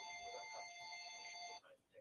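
A faint electronic alert tone: a steady chord of several pitches, held for about two seconds and cutting off suddenly.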